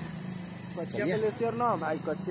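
Motorcycle engine running at a steady idle, a low even hum. A person's voice speaks over it from about a second in.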